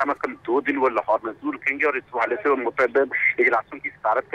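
Only speech: a man talking steadily in Urdu. His voice is thin and narrow, like a voice over a telephone line.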